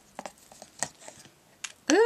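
A few light, scattered clicks and taps of a plastic spoon against a clear plastic storage tub as glitter is spooned off and the tub is handled, with a faint rustle of paper. A woman starts speaking near the end.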